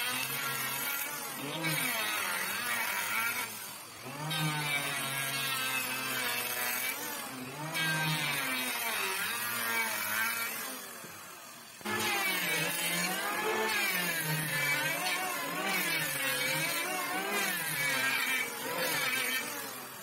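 Electric hand planer running and cutting along a wooden plank, its motor pitch sagging and recovering as the blades bite over repeated passes. The level drops briefly about four seconds in and again just before twelve seconds, between strokes.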